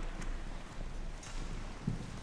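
A few light knocks over a steady low hum, with no speech.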